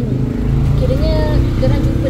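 A woman's voice talking over a steady low rumble like a running engine.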